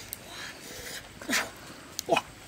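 A dog gives one short, sharp yip about a second and a quarter in, over a faint steady outdoor background.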